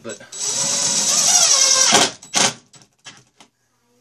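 Cordless drill-driver running for about two seconds to drive a number 8 pan-head sheet metal screw through a steel shelf bracket into particle board shelving, then stopping. A short second burst follows to snug the screw down without stripping it.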